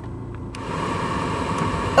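Inside a moving car: a low rumble from the engine and road, then about half a second in a steady hiss with a faint hum starts suddenly and carries on.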